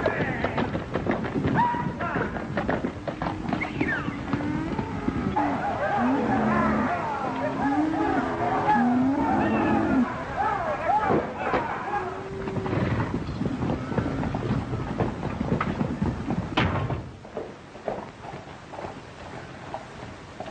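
Animals calling: many overlapping short cries that rise and fall in pitch, thick for the first half and dying down about seventeen seconds in.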